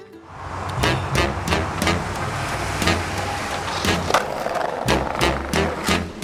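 Skateboard wheels rolling on concrete with a steady low rumble, broken by a string of sharp clacks and pops from the board hitting the ground and ledges. The rumble drops out briefly near the end, then starts again.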